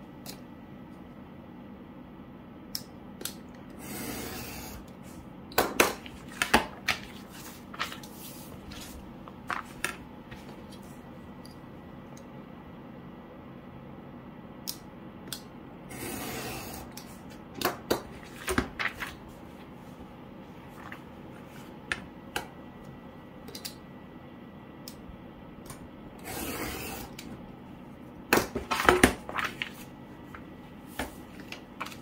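Snap-off utility knife drawn along a steel ruler, slicing through a small stack of grid-paper diary sheets on a cutting mat. There are three scraping cuts, each about a second long and roughly ten seconds apart, and each is followed by sharp clicks and taps as the ruler, knife and paper are moved and set down.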